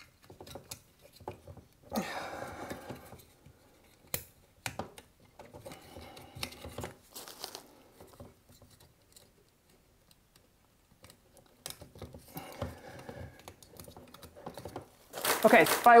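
Electrical wires and a plastic wall socket being handled as wires are pushed into its push-in connectors: scattered small clicks and short bouts of rustling, with one sharp click about four seconds in.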